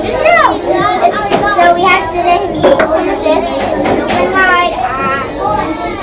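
Young children's voices chattering and vocalising in play, with no clear words.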